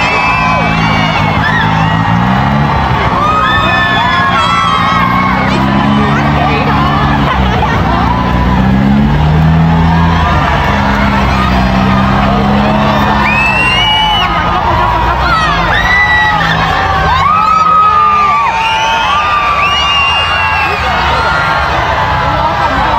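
A crowd whooping and shouting over loud music, with many short high calls rising and falling throughout.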